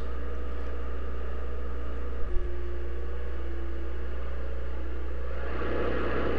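Aircraft engines droning steadily: an even, low, unbroken drone with no change in pitch.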